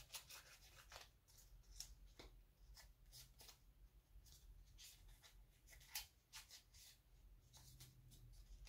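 Very faint, irregular snips and rubbing of small scissors working their way into a taped paper pocket to open it up.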